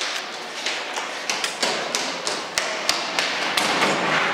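Quick running footsteps on a hard corridor floor, a fast irregular series of sharp steps that grows louder toward the end.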